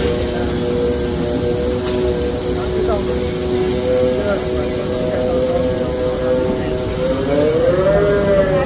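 Automatic glue-laminating toilet paper making machine running: a steady hum of several tones with a high whine above. Near the end the tones rise in pitch and fall back.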